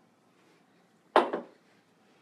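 A single sharp clink of glassware a little over a second in, ringing briefly after it, as a drinking glass is taken from a glass-fronted cabinet.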